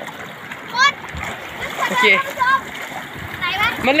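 Water splashing as people wade and slide through a shallow, fast-flowing stream, over a steady rush of running water.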